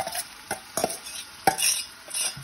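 A spoon knocking and scraping against a metal pot while chicken is stirred in it: a handful of sharp, irregular clacks.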